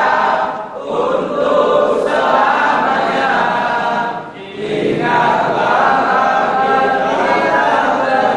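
A group of young men singing together without accompaniment, the phrases broken by short breaks a little under a second in and about four seconds in.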